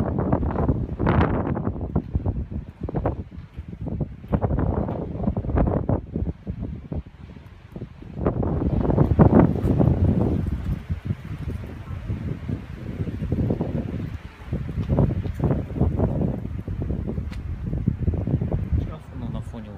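Wind buffeting the microphone in irregular gusts, strongest about halfway through.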